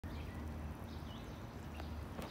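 Outdoor ambience: a few faint bird chirps, one about a second in, over a steady low rumble.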